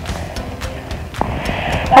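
Wind rumbling on a phone microphone outdoors, with light rustling and faint clicks, and a hiss that swells near the end.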